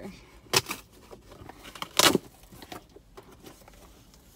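Cardboard shipping box being pried and torn open by hand: a short rip about half a second in and a louder one about two seconds in, with lighter scraping of cardboard between.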